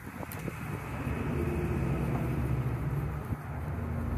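Steady low rumble of road traffic around a parking lot, growing louder over the first second or so, with a few light clicks at the start.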